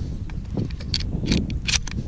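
Shotgun shells being pushed into the tube magazine of a pump-action shotgun: several short sharp clicks, over a steady low rumble of wind on the microphone.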